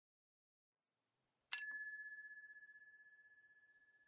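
A single bell-like chime struck once about a second and a half in, ringing with two clear high tones that fade out slowly over the next two seconds.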